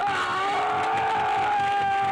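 A man's long, loud scream, held on one steady pitch with a rough, noisy edge.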